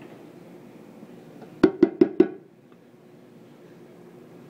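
Four quick, hard knocks in a row, about a fifth of a second apart, a little before the middle, over a faint steady background hum.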